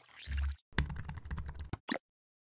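Computer-keyboard typing sound effect: a quick run of key clicks lasting about a second. It is preceded by a short sweep with a deep thud and ends with a single separate click.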